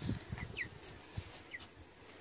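A young chicken peeping: a couple of short, high peeps, each falling in pitch, with soft bumps as the bird is settled into a plastic basin.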